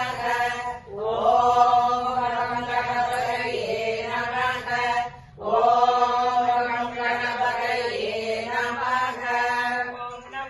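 A voice chanting a devotional hymn in long held, slowly gliding notes. It breaks off for breath about a second in and again about halfway through.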